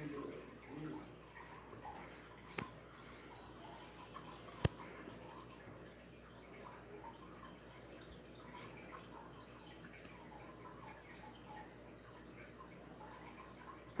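Volume Lighting Minster ceiling fan running faintly and steadily, with a soft click about two and a half seconds in and a sharper one a couple of seconds later.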